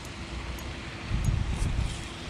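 Wind buffeting the microphone: a steady rush that swells into a low rumble about a second in.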